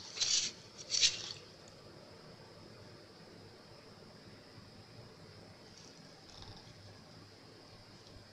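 Two short rustles about a second apart at the start, from gloved hands handling, then only a faint steady hiss with a thin high tone.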